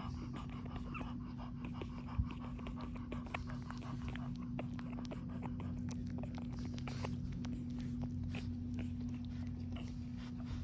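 Mother dog licking a newborn puppy clean: many soft, irregular wet clicks over a steady low hum.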